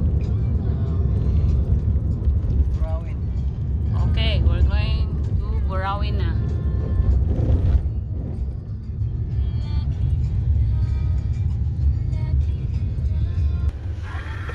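Steady low rumble of a moving car heard from inside the cabin, with voices and music over it about the middle.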